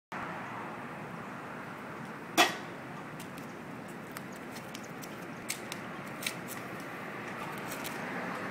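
A sharp knock with a brief ring about two seconds in, then a few lighter clicks, over a steady background hiss.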